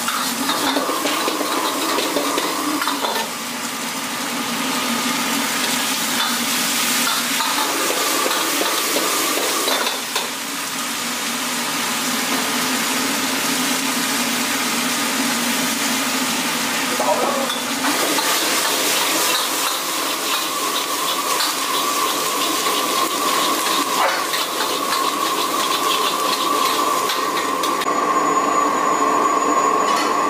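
Stir-frying in an iron wok: oil sizzling as a metal ladle scrapes and tosses chopped green and dried red chilies, with fried mushroom pieces poured in about halfway through and stirred in. A steady hum runs underneath.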